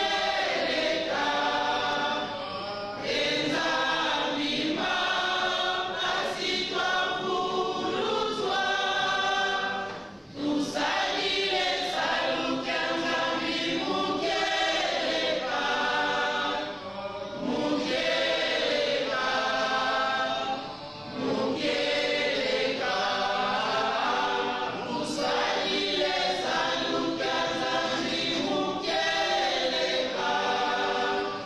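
A large group of voices singing together in chorus, with long held notes sung in phrases and brief breaks between phrases about ten seconds in and again around 21 seconds.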